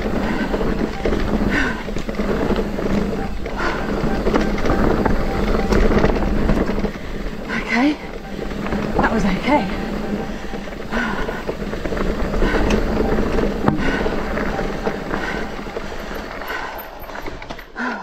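Mountain e-bike riding noise: wind on the camera microphone and tyres rattling and knocking over a rough dirt trail, with a few short vocal sounds from the rider around eight to ten seconds in. The noise drops away suddenly at the very end.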